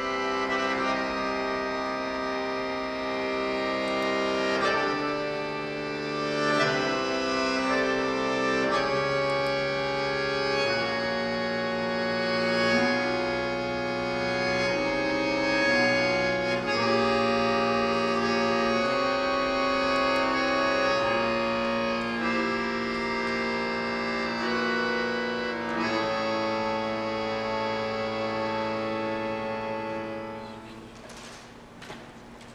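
Bayan (chromatic button accordion) played solo: sustained full chords, held and changing every second or two, with low bass notes underneath.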